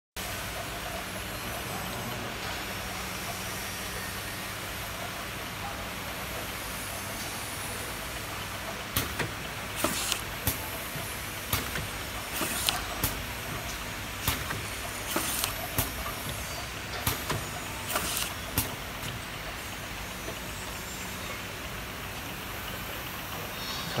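CX-DTJ automatic bottle labeling machine running, a steady motor and conveyor hum. About nine seconds in, a run of irregular sharp clicks and clacks begins and goes on for some ten seconds as bottles pass through the labeling station.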